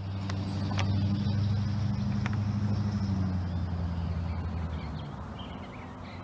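A motor vehicle's engine drone passing by: a steady low hum that swells over the first second or two, then fades away about five seconds in.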